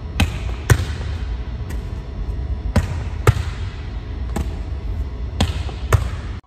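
A volleyball repeatedly forearm-passed against a painted concrete-block wall: sharp smacks as the ball leaves the forearms and strikes the wall, mostly in pairs about half a second apart, nine hits in all.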